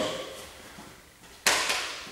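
A single sharp smack of a roundhouse kick landing on a handheld kick shield, about one and a half seconds in, with a short echo in the room.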